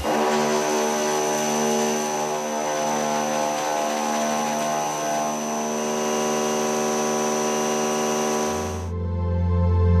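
Indexable face mill cutting 1055 steel: a steady machining hum with evenly spaced overtones and a thin high whine, holding constant through the cut. About eight and a half seconds in it gives way to background music with a deep bass drone.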